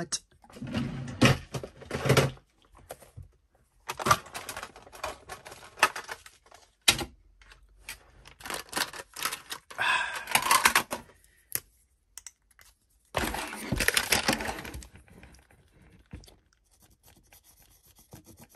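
Gold paint marker being shaken in four bursts of a second or two each, its mixing ball rattling in quick clicks to stir the paint before use, with one sharp click about seven seconds in.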